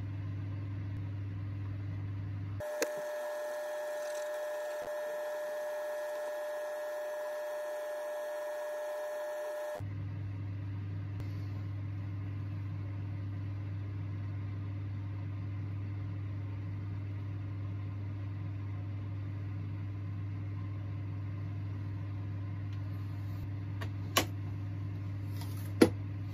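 A steady low hum. Between about three and ten seconds in it gives way to a steady high-pitched tone, then returns.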